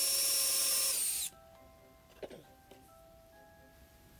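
Cordless drill boring a hole into a small wood block, its motor running with a steady whine and the bit cutting, then cutting off suddenly about a second in. Soft background music carries on after it.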